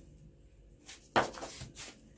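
A quiet moment, then a single sharp knock about a second in, followed by brief rustling of something being handled.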